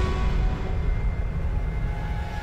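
Cartoon soundtrack: a steady low rumble under a few long held music tones, easing off slightly toward the end.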